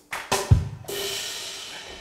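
Pre-recorded drum track played back: a sharp hit, then a deep bass-drum thump about half a second in, followed by a ringing wash that slowly fades.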